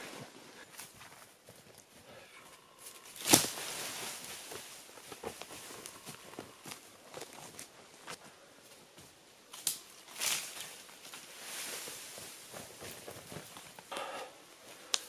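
Footsteps and rustling through dry leaf litter and twigs on the forest floor, with a sharp crack about three seconds in and two more near ten seconds.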